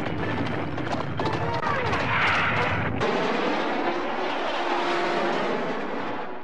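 Cartoon soundtrack effects: a steady rushing noise with faint held tones over it. The deep part of the sound cuts out abruptly about three seconds in.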